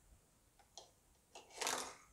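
A LEGO minifigure let go down a plastic slide piece: a couple of light plastic clicks, then a short clatter as it tumbles onto the desk near the end.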